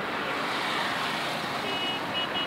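Steady road and engine noise heard from a moving vehicle. A thin, high beeping tone comes in near the end.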